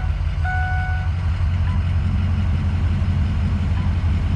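Ford 6.0 Power Stroke V8 turbo diesel idling with a steady low rumble, heard from inside the cab. A dashboard warning chime sounds once about half a second in.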